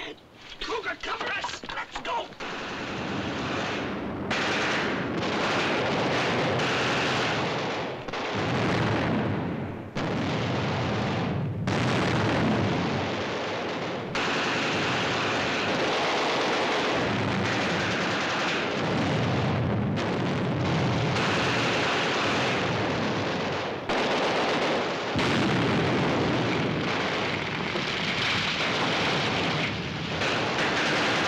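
Film battle sound of dynamite explosions and gunfire: a continuous heavy roar of blasts with rattling shots. The din changes abruptly several times.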